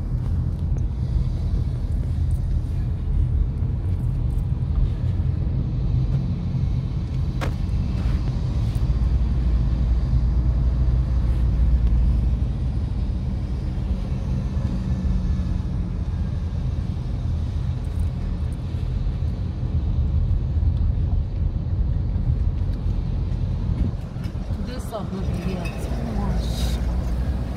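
Inside a moving car: a steady low rumble of engine and road noise, swelling a little about ten seconds in.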